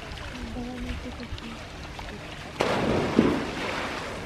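A polar bear cub leaps off a platform into a pool, with a sudden loud splash about two-thirds of the way in that goes on for over a second, over the steady lapping of the water.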